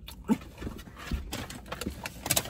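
A person chewing a mouthful of chopped cheese sandwich close to the microphone, with irregular small clicks and smacks of the mouth and one brief throaty sound near the start.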